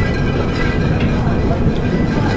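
Wind buffeting an outdoor camera microphone: a steady low rumble, with faint voices in the background.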